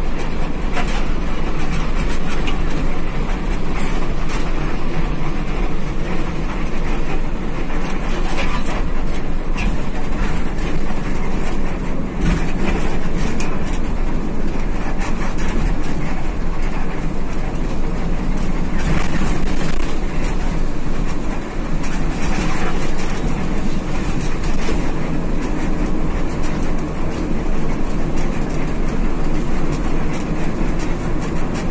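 Executive coach driving at road speed, heard from inside the cabin near the front: a steady mix of engine, tyre and road noise with frequent light rattles and clicks.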